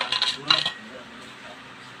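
A stainless steel vacuum flask's screw top and cup being handled: a few quick metal clinks in the first second.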